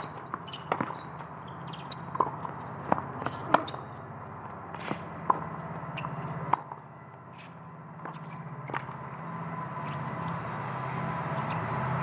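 Tennis rally on a hard court: a string of sharp racquet-on-ball hits and bounces, roughly one a second, ending about seven seconds in. Near the end, crowd noise swells as the match point is won.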